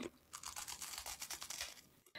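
Faint close-up ASMR mouth sounds: a quick run of small clicks from lips and chewing, starting a moment in and stopping shortly before the end.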